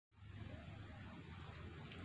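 Faint room tone: a steady low hum under a light hiss.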